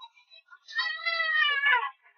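A single long cat meow, about a second long, sinking in pitch toward its end.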